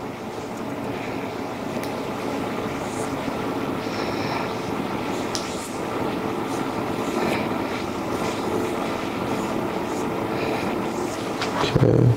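A steady whooshing background noise, with a few faint clicks from hair-cutting shears and a comb. Near the end comes a brief louder low thump.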